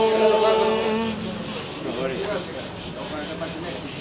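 Crickets chirping in a steady, fast, even pulse, about five chirps a second. Male voices chanting a sustained Byzantine hymn note stop about a second in, and brief indistinct voices follow.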